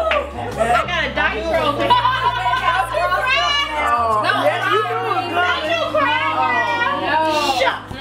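Several women talking and laughing over one another in lively chatter, over soft background music with a steady bass line.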